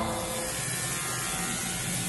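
Shower running: a steady hiss of water spraying in a small shower stall.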